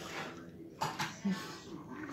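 A woman's soft laughter and breaths, with a few faint clicks about a second in.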